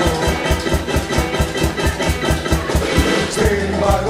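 Band music with drums keeping a fast, steady beat under bass, electric guitar and organ, in a sixties-style pop song.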